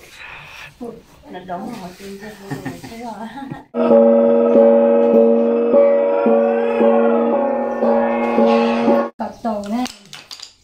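Voices and laughter for the first few seconds. Then a loud, steady, pitched musical tone of several notes at once, pulsing about every half second, sounds for about five seconds and cuts off suddenly.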